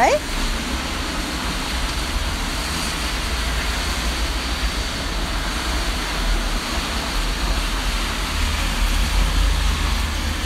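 Steady rain falling, a constant hiss with a low rumble underneath.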